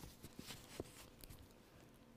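Near silence with a few faint, scattered rustles and light ticks of paper: the loose pages of an old, falling-apart book being handled.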